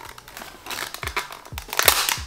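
A clear plastic product box crinkling and clicking under fingers as its sealing tape is picked and pried at. The crackling grows to a burst of sharp cracks near the end.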